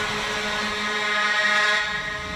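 A sustained synth chord held steady with the drums and bass cut out, a breakdown in a drum and bass mix; low rumbling starts to return near the end.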